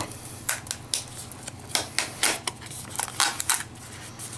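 A small cardboard box and its torn-off pull strip handled by hand: scattered light clicks and rustles of paperboard.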